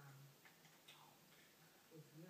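Near silence: a few faint ticks in the first half, over a faint steady low hum.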